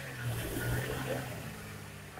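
Minibus engine running at low revs as the bus creeps over a rough, rocky dirt track. Its hum swells a little about half a second in, then settles.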